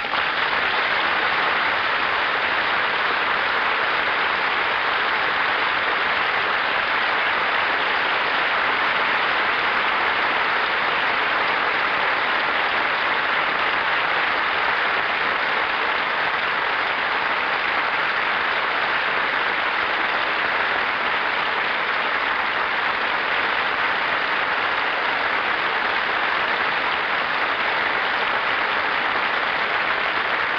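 Long, steady applause from a large theatre audience, easing slightly near the end.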